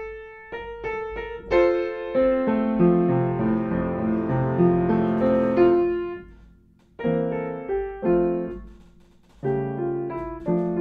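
Upright piano being played: runs of struck notes, then a held, pedalled passage that rings and dies away about six seconds in. After a near-silent gap the playing resumes with short phrases and another brief pause near the end.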